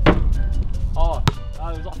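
A basketball strikes the rim of an outdoor hoop with a sharp knock, followed by a second knock about a second later as it comes down.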